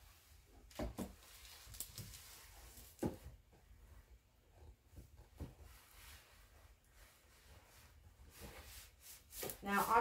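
Household iron slid and pressed over parchment paper inside a wooden drawer, ironing glued wrapping paper down: faint rubbing and rustling with a few light knocks of the iron against the wood.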